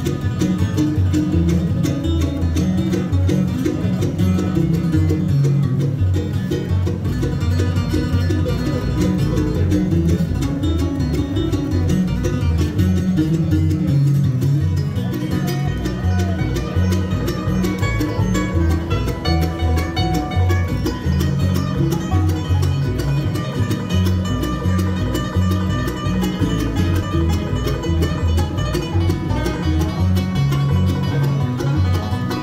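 Live acoustic bluegrass band playing an instrumental tune: banjo, mandolin and acoustic guitar picking over an upright bass keeping a steady beat.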